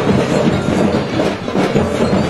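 Marching band drums playing a fast, steady, loud cadence of repeated strokes.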